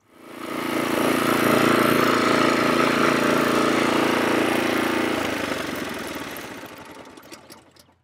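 Yardmax YD4103 power wheelbarrow's small gas engine running steadily as the machine drives along carrying a load of firewood. The engine sound rises over the first second and fades away over the last few seconds.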